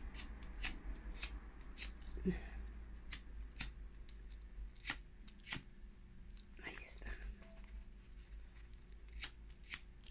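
Faint, irregular clicks and light handling noise from a pocket lighter and a green craft-foam leaf being turned in the fingers while its edge is heated to curl it, with a couple of brief vocal murmurs.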